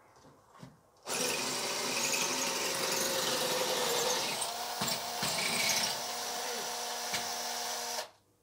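Makita 6280D cordless drill boring into a brick wall. The motor starts about a second in and runs steadily under load, its pitch stepping up slightly about halfway, with a few knocks, then cuts off suddenly.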